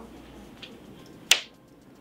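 A single sharp click of a clothes hanger knocking against a metal clothing rail as it is lifted off, about a second and a half in.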